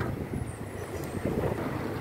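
Steady low rumble of city street traffic: cars and other vehicles running along the avenue.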